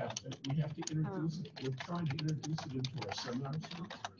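Typing on a computer keyboard: a quick, irregular run of key clicks, with low voices talking underneath.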